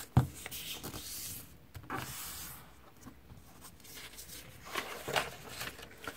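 A sheet of origami colour paper being folded in half and creased by fingers sliding along the fold, then opened out. There is a sharp tap just after the start, followed by several short rustling swishes of paper.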